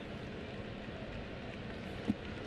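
Steady background noise of a baseball stadium crowd.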